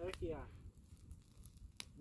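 Open wood fire of sage brush and pine burning, crackling faintly with a single sharp snap near the end.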